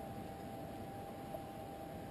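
Steady low hiss of room tone with a faint constant high whine underneath.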